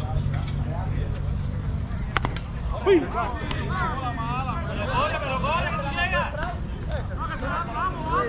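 A softball bat cracks against the ball once, about two seconds in, followed by several players shouting and yelling.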